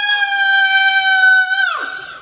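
A woman's long, high-pitched scream on a near-steady note, sliding down in pitch as it breaks off near the end.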